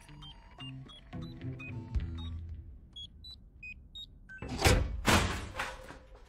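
Film soundtrack: tense background music with short electronic beeps at several different pitches from a handheld code decoder, then two loud bursts of noise about half a second apart near the end.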